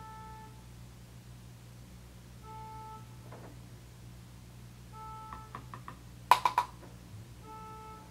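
A short electronic beep repeating about every two and a half seconds, from a car outside, with a quick run of faster beeps a little past the middle and then three loud sharp clicks, the loudest sounds here.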